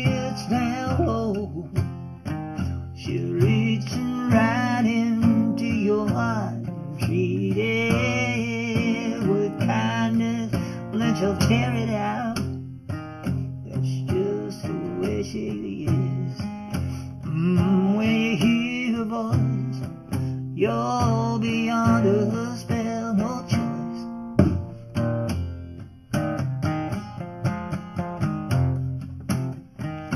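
Instrumental break in an acoustic blues song: guitar leading with bent, sliding notes over a steady strummed and bass accompaniment.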